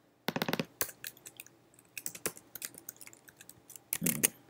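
Computer keyboard keystrokes while code is copied and pasted into a text editor: a quick cluster of key presses about half a second in, then scattered single clicks.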